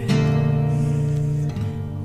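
Song music: an acoustic guitar chord strummed once right at the start and left to ring, fading over about a second and a half.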